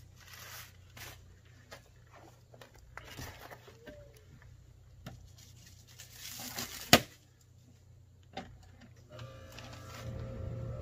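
Rustling and crinkling of packing material and cardboard as parts are lifted out of a mower's shipping box, with scattered light clicks and one sharp knock about seven seconds in.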